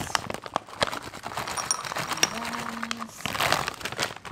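Frozen blueberries poured from a plastic bag into a glass bowl, clicking and rattling against the glass in a rapid patter, with a denser rush about three seconds in.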